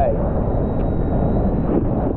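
Steady rushing noise of wind on the microphone and water spray while riding an electric hydrofoil board across open sea.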